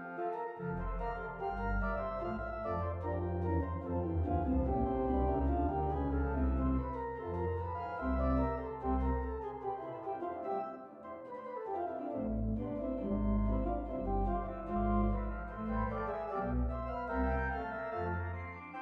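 Church organ playing a canon in F major: sustained chords and interweaving voices over a deep pedal bass. The bass enters about half a second in, drops out for a moment around ten seconds, and comes back about twelve seconds in.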